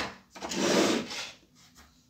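Hard plastic parts, a pistol and 3D-printed scope mounts, slid across a tabletop by hand: one rubbing scrape lasting under a second, followed by a couple of faint light clicks.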